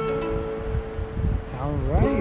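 A strummed chord on acoustic guitar and ukulele ringing on and slowly fading as the playing stops. Near the end a voice slides upward in pitch.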